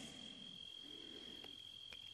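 Faint, steady, high-pitched insect trill, typical of crickets, over quiet room tone.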